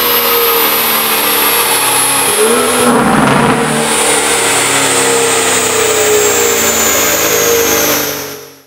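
BMW M140i's turbocharged B58 straight-six running at steady revs through a stainless steel performance exhaust with a de-cat downpipe. About two and a half seconds in there is a brief, louder surge, then it settles back to the same steady note.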